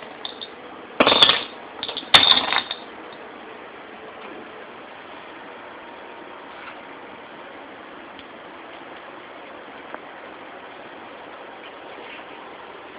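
Wire pet-pen panel rattling in two short bursts about a second apart.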